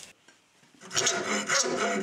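Steel body file scraping in a few strokes, starting about a second in after a brief hush.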